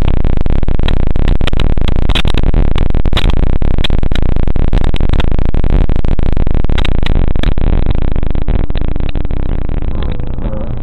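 Loud, harsh, heavily distorted digital noise with constant crackling clicks, the sound of a logo jingle mangled beyond recognition by stacked audio effects. It fades a little over the last two seconds.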